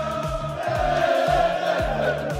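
A crowd of football fans singing together in unison over music with a steady kick-drum beat, about two thumps a second.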